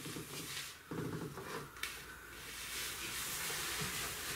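Faint rustling and rubbing from someone working with arms raised overhead in a padded quilted jacket, with a light click about two seconds in. A steady hiss grows louder towards the end.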